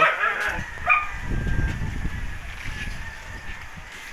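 A short high yelp about a second in, then low rumbling handling noise on the microphone as the handheld camera is swung about.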